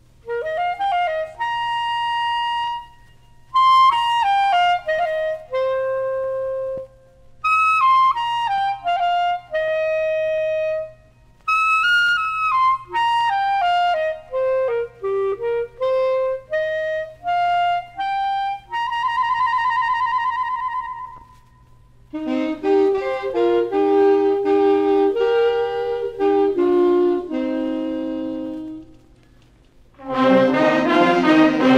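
Ecuadorian military wind band recording of a sanjuanito opening with an unaccompanied clarinet introduction in free time: phrases separated by short pauses, mostly falling runs, and a held note with vibrato about two-thirds through. It is followed by a lower passage in two-part harmony, over a faint steady hum.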